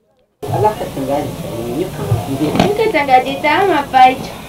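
Several people talking at once over a steady hiss, cutting in suddenly after a brief moment of silence.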